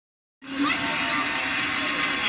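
Television programme audio playing from a TV set and picked up off the room: a dense mix with a steady held tone that starts suddenly about half a second in.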